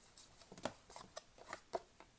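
Pokémon trading cards being slid off a hand-held stack one after another: faint, quick flicks and ticks of card on card, several a second.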